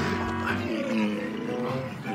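Walruses bellowing over background music, with a wavering, drawn-out call near the middle.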